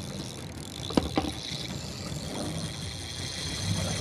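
Fishing boat's engine running steadily, with two sharp knocks about a second in.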